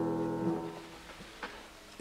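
Welmar baby grand piano holding the final chord of a piece, which cuts off sharply about half a second in and dies away, followed by a faint click.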